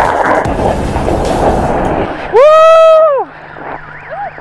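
Snowboard sliding and scraping over packed snow, with wind rushing on the camera microphone. About two seconds in, a loud held yell of just under a second, rising in pitch at the start and falling at the end.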